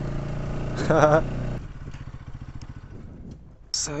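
Motorcycle engine running as the bike rides along a dirt track, with a short voice about a second in. After about a second and a half the engine sound drops away abruptly to a faint, low, even pulsing.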